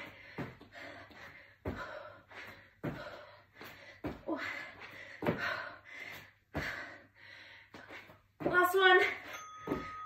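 Person exercising hard: short, forceful puffs of breath together with bare feet landing on an exercise mat, repeating about once every 1.2 seconds as she jumps a leg forward into spider lunges. A brief voiced sound of effort comes near the end.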